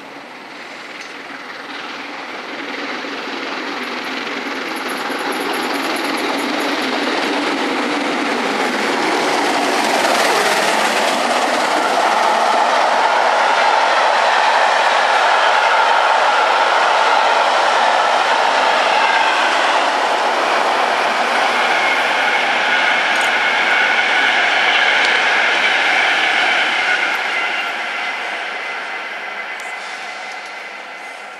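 LMS Princess Coronation class steam locomotive 46233 'Duchess of Sutherland' and its coaches passing through at speed on the main line. The sound swells as the train approaches, stays loud as the coaches go by, then fades near the end.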